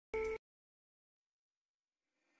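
Digital silence broken once, just after the start, by a short pitched tone lasting about a quarter of a second.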